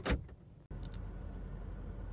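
End of a spoken word, then, after an abrupt cut, a steady low rumble of a running car heard from inside its cabin.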